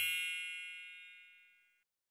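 A bright, high bell-like chime ringing out and fading away, dying out about a second and a half in.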